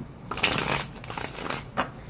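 A deck of Rider-Waite tarot cards being handled and shuffled: a papery rustle starting just after the beginning and lasting about a second and a half, with a few light snaps.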